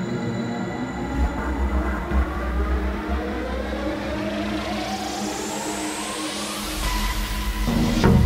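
Electronic dance music build-up: a synth sweep climbs steadily in pitch over a deep, pulsing sub-bass, peaking at the end as a heavy drum hit lands.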